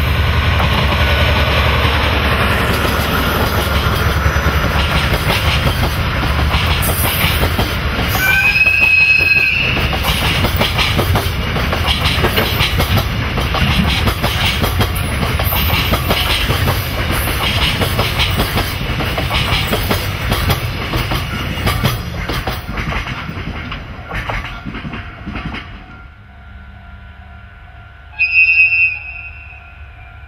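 A DE10 diesel locomotive and a long rake of loaded container flat wagons passing close by, the wagon wheels rumbling with a run of repeated clicks over the rail joints, and a short typhon horn blast about nine seconds in. The train noise cuts off suddenly near the end, and a second short typhon horn blast from an approaching DE10 follows.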